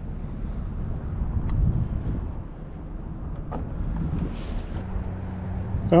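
Wind rumbling on the microphone, with a few faint clicks and a brief soft hiss a little after four seconds in.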